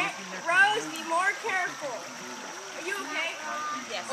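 Voices of several people talking and calling out, over the steady rush of a shallow creek's flowing water.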